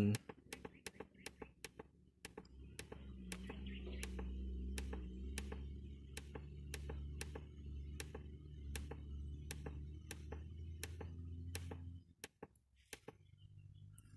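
Sharp clicks at about two a second as the down button on a genset controller's keypad is pressed over and over to scroll through its setup menu. A low steady hum runs underneath, starting about two seconds in and stopping about twelve seconds in.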